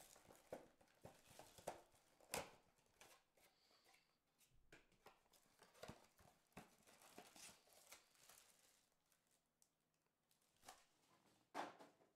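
Faint crinkling and tearing of plastic shrink-wrap being pulled off a trading-card box, then the cardboard box being opened and handled, with scattered small clicks and a sharper tap about two seconds in.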